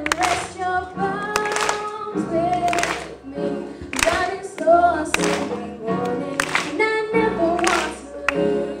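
Live pop band playing: a female lead singer singing into a microphone over electric guitar and a drum kit, with a drum hit landing about every 1.2 seconds.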